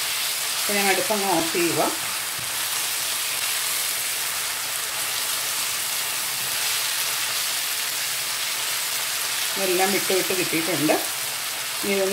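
Minced lamb masala sizzling steadily as it fries in a pan, stirred and scraped with a spatula.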